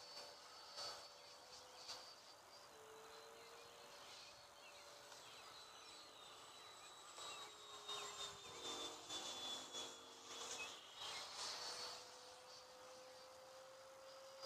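Faint, distant whine of a 90 mm electric ducted-fan RC jet in flight, its pitch drifting slowly down, with a few soft clicks.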